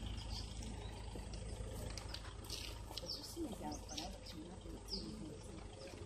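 Outdoor ambience: a steady low rumble, with people talking quietly and indistinctly in the second half and short high bird chirps now and then.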